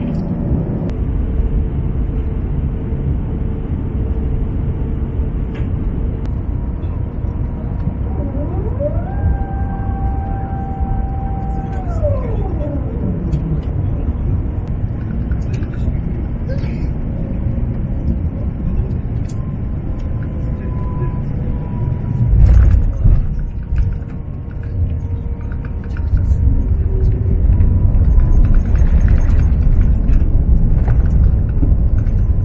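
Jet airliner cabin during landing: a steady low rumble of engines and airflow, with a whine that rises, holds for about three seconds and falls away near the middle. A loud jolt comes about 22 seconds in, the touchdown on the runway, and from about 26 seconds a louder rumble follows as the aircraft rolls out and slows.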